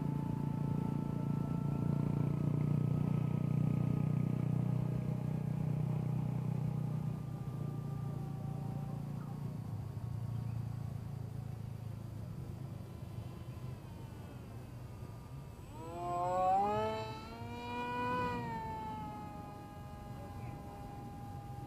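Turnigy 2200KV brushless motor and propeller of a small scratch-built RC parkjet whining in flight. A faint steady whine over a low hum fades over the first ten seconds. About sixteen seconds in, a louder whine swells and wavers in pitch for a few seconds before dropping away.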